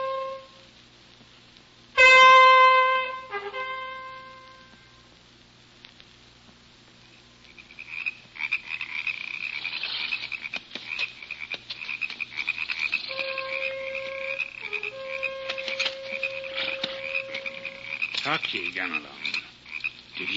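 Radio-drama sound effect of Roland's ivory horn: one loud blast about two seconds in, about a second long, ending on a short lower note. After a few quiet seconds, a steady chirring chorus of night creatures with many small clicks sets in. Under it the horn sounds again faintly in two long held notes, as if heard from far off.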